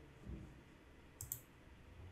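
Two quick, faint computer mouse clicks a little over a second in, over quiet room tone, with a soft low bump shortly before.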